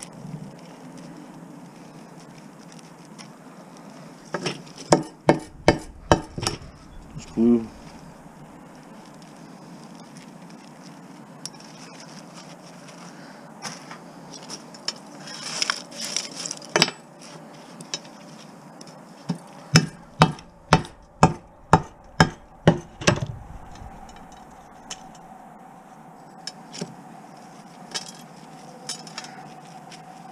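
Hammer blows cracking TV deflection yokes, breaking the ferrite core and plastic so the copper winding comes free. About six blows come a few seconds in, and a faster run of about ten blows, roughly three a second, comes past the middle.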